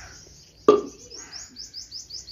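A bird chirping repeatedly: a quick run of short, high-pitched rising chirps, about five a second, beginning about a second in. Just before the chirps start there is a single brief, louder sound.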